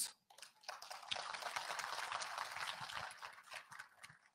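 Audience applause, a light crackling patter of many hands clapping that starts about half a second in and dies away near the end.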